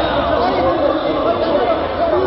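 Several voices talking over one another: an unbroken, overlapping chatter of men's voices.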